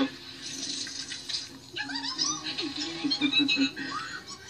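Cartoon soundtrack playing from a television: music, with a few high sparkly tones in the second half.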